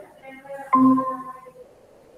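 Short electronic chime, like a device notification or ringtone: a few soft tones, then a sudden louder tone about two-thirds of a second in that fades away within a second.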